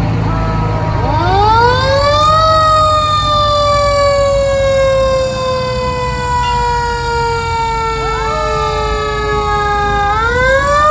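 Fire truck siren winding up over about a second and a half, then slowly winding down in pitch, and winding up again at the very end, with a brief second rising wail near the end. Under it, the low rumble of the parading fire trucks' engines.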